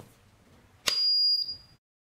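SUGON T36 soldering station switched on at its rocker switch: a click and then a single high electronic beep, about half a second long, the station's power-on signal.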